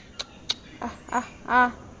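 A person makes two sharp tongue clicks, then three short nasal "ah" calls to a dog. Each call is louder than the last.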